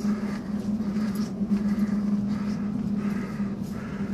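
Footsteps of a person walking down a carpeted corridor, about two steps a second, over a steady low hum.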